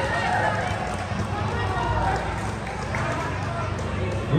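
Basketball players running on a hard court, with indistinct shouting and chatter from players and spectators.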